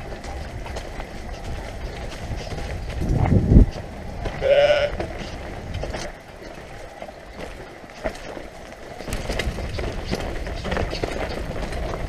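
Mountain bike riding down a rocky singletrack: tyre rumble and rattling over stones, with wind buffeting the camera microphone, loudest about three seconds in. A short high-pitched call rings out about four and a half seconds in.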